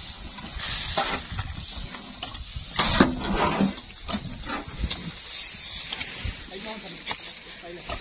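Unhusked paddy rice shovelled off a trailer, grain rushing and sliding down with a hiss, the loudest rush about three seconds in, with scrapes and knocks of the shovels. Voices murmur in the background.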